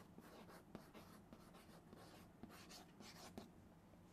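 Chalk faintly scratching and tapping on a chalkboard as a word is handwritten, in a series of short strokes.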